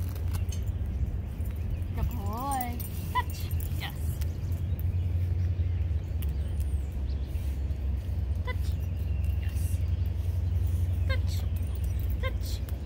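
A steady low rumble, with a person's short high-pitched call, rising and falling, about two seconds in, and a few faint short chirps later on.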